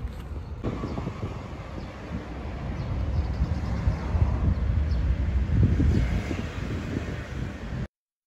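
Wind buffeting the microphone outdoors: an uneven low rumble that grows louder toward the middle and cuts off abruptly near the end.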